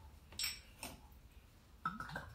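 Faint light clinks and knocks of a glass soda bottle and a stemmed glass being handled: two small ones in the first second and another near the end.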